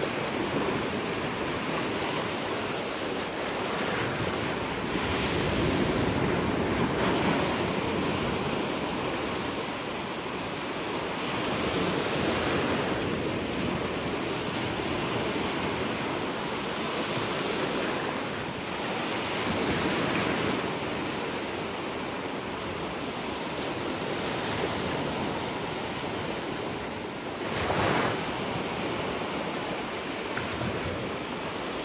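Steady rush of shallow sea water and small waves, swelling and easing every few seconds, with some wind on the microphone. A brief louder whoosh comes near the end.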